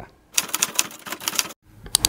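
Typing sound effect: a quick run of rapid key clicks lasting about a second, followed by a single sharper click just before the end.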